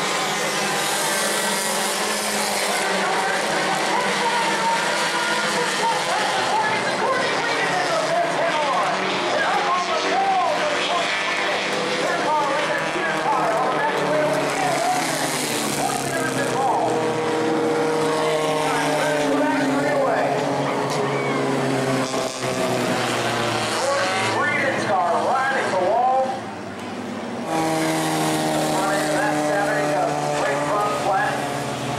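Bomber-class stock car engines running past on the track, each engine note falling in pitch as a car goes by, with surges of engine and tyre noise as the pack passes, once near the start, again about halfway and again near the end.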